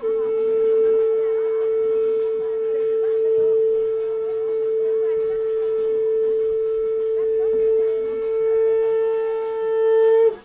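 A conch shell (shankh) blown in one long, loud, steady note held for about ten seconds, ending with a slight drop in pitch.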